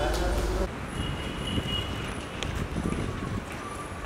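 A voice that cuts off abruptly just under a second in, followed by street background noise with scattered clicks and faint, thin high tones.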